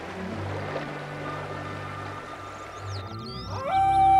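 Background music with low sustained tones. Near the end a wolf pup howls: its pitch rises, then holds steady.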